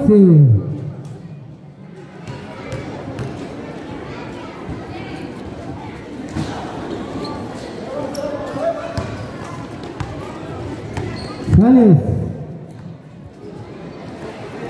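A basketball bouncing on a concrete court under a background of spectators' chatter, with scattered sharp knocks. A loud amplified voice calls out briefly at the start and again near the end.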